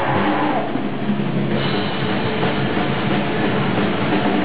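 Live hardcore band playing loud, distorted guitar, bass and drums, heard from inside the crowd.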